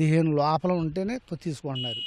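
A man talking, and near the end a single steady high-pitched beep lasting about half a second.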